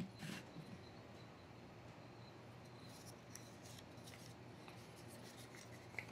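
Faint handling sounds of wood-and-metal jaw harps being set down and shifted on a plywood tabletop, with a few light clicks: one just after the start and several around the middle.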